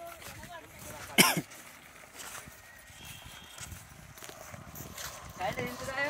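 Low voices and shuffling footsteps of a small group walking slowly on a paved road. About a second in comes one short, loud cry that falls steeply in pitch.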